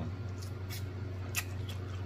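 Close-miked mouth sounds of eating a fried chicken wing: a few short wet clicks from chewing and lip smacking as meat is pulled off the bone, over a steady low hum.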